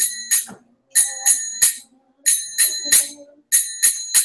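Karatals (small hand cymbals) struck in the kirtan three-beat rhythm, a group of three ringing clashes about every 1.3 seconds, with brief silences between the groups.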